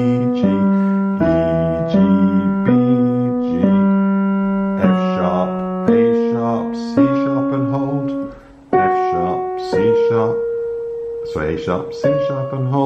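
Digital piano playing slow broken chords in the low-middle register, one note at a time about once a second, each note ringing on into the next, with a brief break a little after eight seconds.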